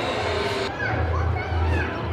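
Children playing and calling out at a distance, short rising and falling calls, over a steady low rumble.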